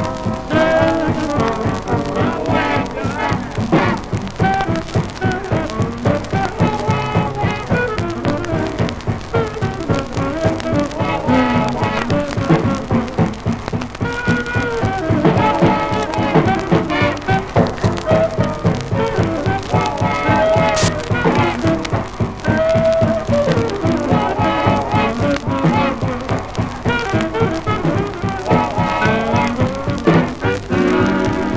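Swing dance band with saxophones and brass playing over a steady beat: the band's closing theme after the broadcast's sign-off, heard from a 1940s 16-inch transcription disc.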